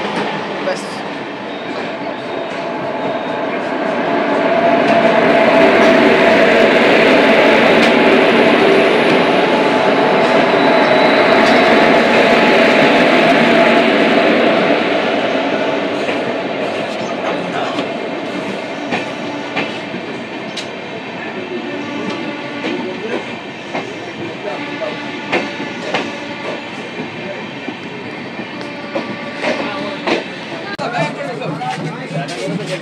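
A train running at speed, heard from the open door of a moving passenger coach. A loud rush swells from a few seconds in and holds for about ten seconds as the train passes alongside other trains, then fades into wheels clicking steadily over rail joints.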